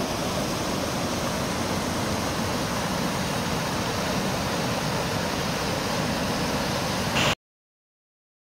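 Steady rush of a river in flood pouring over a weir, the water swollen by rainfall. It cuts off abruptly near the end.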